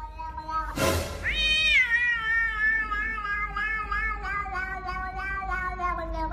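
A cat's single long, drawn-out meow, rising sharply at the start and then held with a slight waver, sinking slowly in pitch for over five seconds. A short noisy scuff comes just before it.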